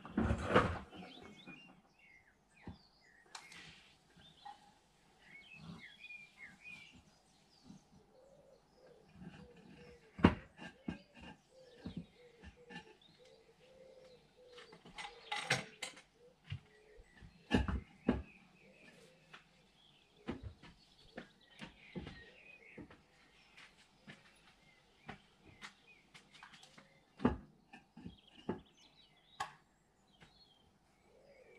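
Small birds chirping on and off, broken by a few sharp knocks, the loudest of them about half a second in and near the middle.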